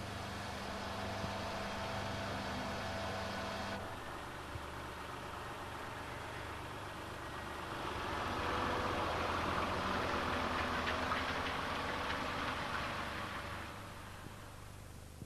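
Diesel engine of a rigid milk tanker lorry pulling away and driving off, swelling about eight seconds in and fading near the end. Before it, a steady mechanical hum stops abruptly about four seconds in.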